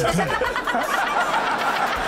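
Several people laughing at once, with overlapping bursts of laughter and a few spoken sounds mixed in.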